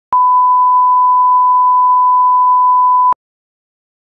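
Television test-card reference tone: a single steady, high, pure beep held for about three seconds, then cut off sharply.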